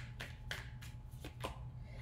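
Tarot cards being handled and drawn from a deck: several brief, soft card flicks and slides as a card is pulled and turned over.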